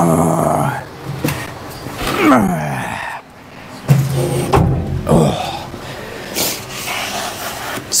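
A man grunting with effort as he lifts a heavy steel tank out of its box: several strained grunts that sag in pitch, with a few knocks in between.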